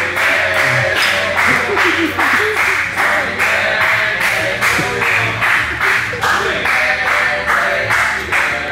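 Rhythmic clapping, about three claps a second, under voices singing a birthday song.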